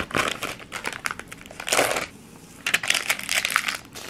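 Pink plastic shipping mailers crinkling and rustling as they are handled and an order is packed. The sound comes in irregular bursts, the loudest about two seconds in and a longer run near the end.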